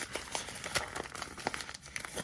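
Printed plastic garment bag crinkling and crackling in a steady, irregular patter as hands crumple it open.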